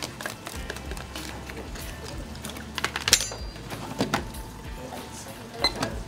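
A few light clicks and scrapes of a small spoon against a plastic dessert cup as the last bites are eaten, over quiet background music.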